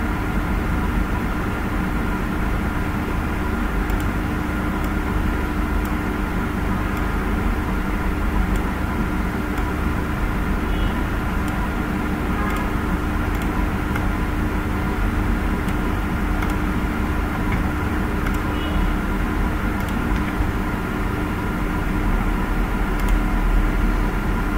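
Steady background hum with a low rumble and a few constant tones, broken by a handful of faint clicks.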